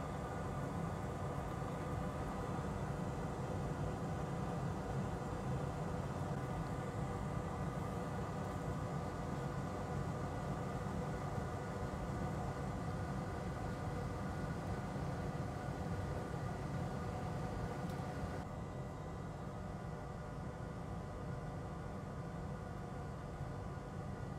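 Steady background hum and hiss of the workbench room, with no distinct events; it gets slightly quieter about three-quarters of the way through.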